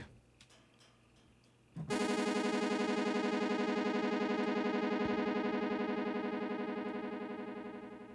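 Helm software synth playing a short plucked note through its delay at very high feedback: the echoes repeat about ten times a second and run together into one buzzy, fluttering sustained tone. It starts about two seconds in and fades over the last couple of seconds.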